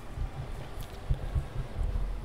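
Low, irregular bumps and light knocks from the handling of a plastic laptop: its bottom cover is set aside and the opened laptop is steadied on the table.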